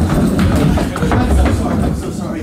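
Low rumbling and repeated thuds on a hollow raised stage platform: running footsteps and a wheeled box cart being pushed across the boards.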